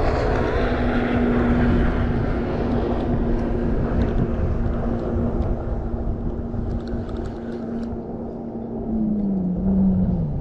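Steady engine drone from a passing motor: one humming tone over a low rumble, which dips in pitch about nine seconds in.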